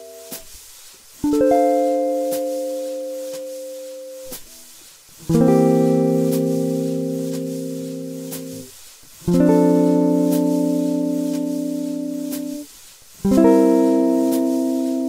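A guitar strums four chords about four seconds apart. Each chord rings for a few seconds and is then damped. This is a C7-to-F6 perfect cadence exercise in the key of F, played in different chord shapes.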